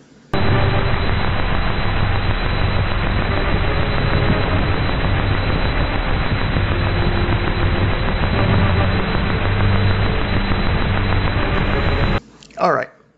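Thin, phone-quality playback of a piece of music decoded from a scanned paper printout of its waveform, the music faint beneath heavy noise from the printing and scanning process, with some echo from bleed-over between adjacent lines of the printout. It starts about a third of a second in and stops abruptly at the end.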